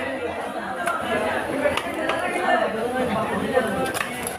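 Indistinct chatter of several voices, with a couple of short sharp knocks in the second half.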